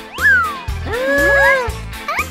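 Children's background music with a steady bass beat. Over it comes a quick rising-then-falling glide, then a drawn-out cartoon meow that rises, holds and falls.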